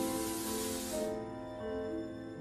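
Stage fog machine hissing as it sprays fog, cutting off suddenly about a second in. Underneath is soft music of long held notes.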